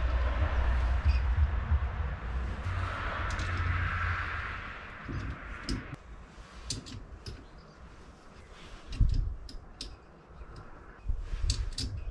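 Light metallic clicks and taps of an Allen key working the small screws that fix a sport steering wheel to its hub on a VW T2 bus, with a few dull knocks. A steady low rumble with a hiss fills the first half.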